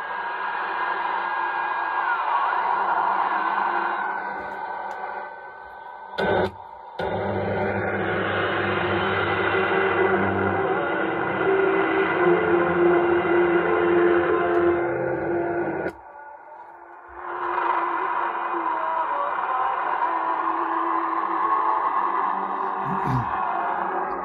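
Long-wave reception from the loudspeaker of a Sailor 66T marine receiver as it is tuned across the band: noise and interference with steady whistles, one of which steps down in pitch about two seconds in. The sound drops away briefly about five seconds in and again near sixteen seconds, with a short loud burst about six seconds in.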